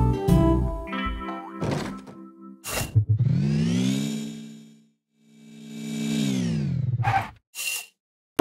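Cartoon car engine sound effect: it revs up in pitch and fades out as the car drives away, then fades back in and winds down in pitch as the car comes back and stops. Before it, a short music cue ends and there are a couple of knocks.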